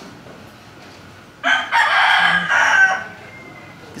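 A rooster crowing once, loud, for about one and a half seconds, starting a little over a second in.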